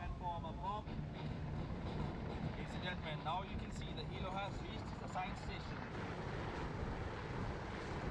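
Steady low rumble of wind and motors over open water, with short snatches of distant announcer speech over a public-address system.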